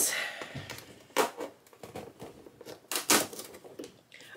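Short rustles and tears of paper and cardboard, about a second in and again about three seconds in, as an advent calendar compartment is opened and a small gift is unwrapped.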